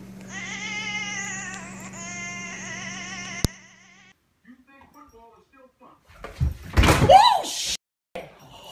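A tabby cat, held up under its front legs, yowls in long wavering cries for about three and a half seconds; the sound cuts off suddenly. Near the end comes a louder burst of voice-like cries that rise and fall in pitch.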